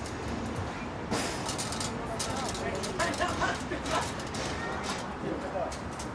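Low, indistinct voices over a steady background, with scattered sharp clicks and knocks.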